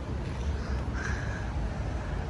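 Outdoor street ambience: a low steady rumble, with one faint caw-like bird call about a second in.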